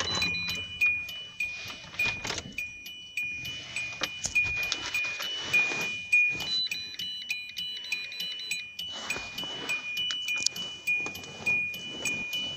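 Electronic chime beeping rapidly in short, high beeps at a few different pitches, with a brief break about three-quarters of the way through. Faint handling clicks sound beneath it.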